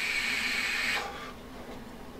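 Long draw on a Smok TFV8 sub-ohm tank on a G320 mod fired at 125 watts: a steady hiss of air pulled through the tank over the firing coil, stopping about a second in. Then a much fainter exhale.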